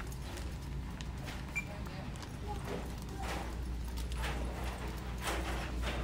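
Footsteps on a hard store floor, a few faint knocks about a second apart, over a steady low hum of the store's background noise.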